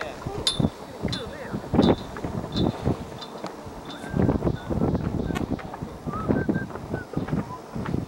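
Indistinct voices of people talking, with a few short sharp clicks.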